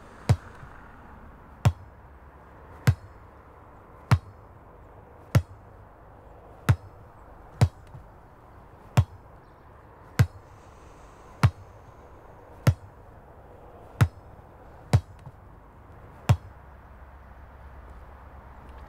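A sharp percussive knock repeating about every one and a quarter seconds, each hit with a short low thump that drops in pitch, over a faint steady hiss.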